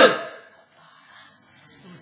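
Crickets chirping in a steady, high, pulsing trill. The tail of a spoken word sounds at the very start.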